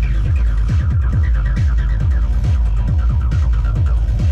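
Dark electronic dance music played live on a hardware synthesizer and drum-machine rig: a deep kick and bass beat several times a second under a rapid, falling synth pattern.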